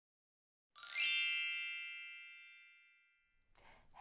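A single bright chime struck about three-quarters of a second in, ringing out and fading away over about two seconds.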